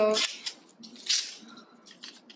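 Glossy magazine paper being handled and torn by hand: short papery rips and rustles, the loudest about a second in.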